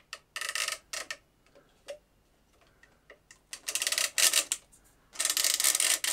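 A microphone being pushed through the holder on a boom stand: short bursts of rubbing and scraping as it slides in, with small clicks between them.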